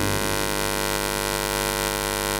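Steady electrical mains hum and buzz from a microphone and amplifier chain: a fixed, unchanging drone of many tones with no other sound over it.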